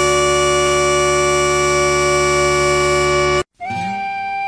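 Bagpipes holding one long note over their steady drones, loud and unchanging, then cut off abruptly about three and a half seconds in. A thinner, higher held piping tone begins just after the cut.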